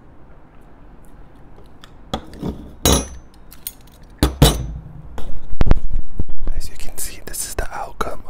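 Metal spoons clinking and knocking as they are handled and set down on a tabletop, starting about two seconds in, then a dense run of scraping and crackling near the end as dried paint is worked off a spoon.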